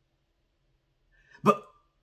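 Near silence, then a man's voice gives one short, clipped syllable about one and a half seconds in.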